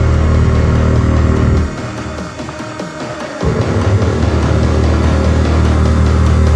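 Dark midtempo industrial electronic music: a deep, loud bass note over a steady ticking beat. The bass drops out for under two seconds in the middle, then returns.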